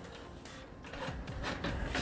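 Faint handling of the hard plastic Transformers toy trailer as a section of it is pivoted down, a low rubbing that grows a little louder in the second second.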